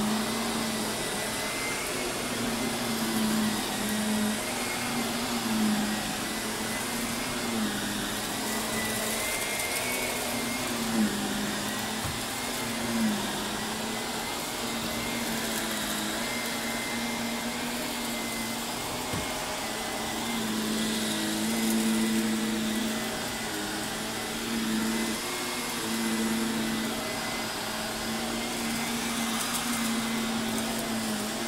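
Shark upright vacuum cleaner running on carpet. Its steady motor whine dips slightly in pitch every couple of seconds as it is pushed back and forth over the pile, with a few small clicks near the middle.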